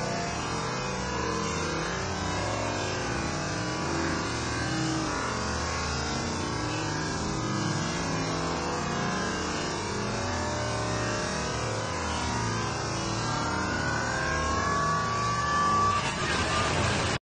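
Water fountain jets pouring and splashing into the pool: a steady rush of falling water, with a faint rising tone near the end.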